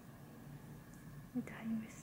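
Quiet room tone, then a soft whispered word near the end.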